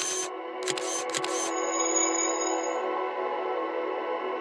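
Logo-animation sound effect: a few quick clicks and swishes over the first second and a half, then a held musical chord that rings on steadily.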